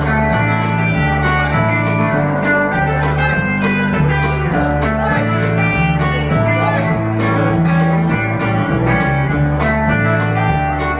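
Live country band playing an instrumental: picked electric lead guitar over walking electric bass and drums keeping a steady beat.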